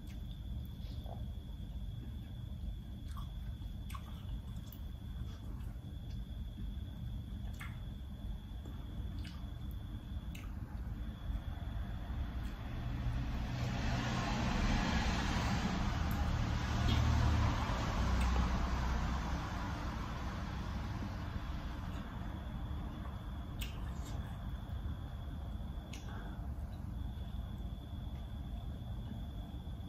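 Quiet eating: a metal spoon clicking against a plate and soft chewing, over a steady low hum. About halfway through, a broad rushing noise with a low rumble swells for several seconds and fades away.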